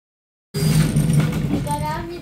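Silence, then suddenly about half a second in the loud scraping rustle of cardboard box flaps being handled and folded open, with a child's voice starting near the end.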